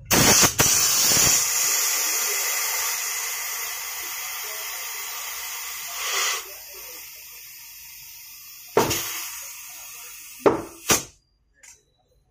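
Compressed air hissing at a scooter tyre's valve. It starts suddenly and loud, fades over about six seconds, then goes on as a quieter hiss. A few sharp knocks come near the end.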